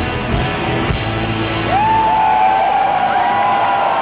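Live rock band with electric guitars and drums playing the last moments of a song, its low end dropping away about two seconds in. A large crowd cheering and whooping comes through as the band stops.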